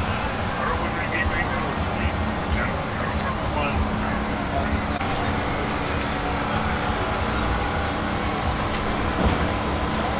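Steady low rumble with a constant hum underneath, and faint, indistinct voices of people talking in the background during the first few seconds.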